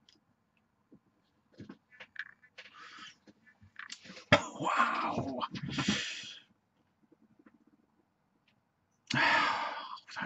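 A person breathing out after a draw on an e-cigarette: a faint breath, then a loud exhale of vapour lasting about two seconds with a sharp click at its start, and another short, loud breath out near the end.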